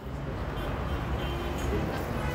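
A steady low rumble with faint music over it.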